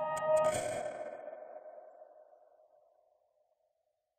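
Rapid clock ticking, about five ticks a second, over a held electronic tone. About half a second in, both cut off in a sharp swell, leaving one ringing tone that fades to silence over about three seconds.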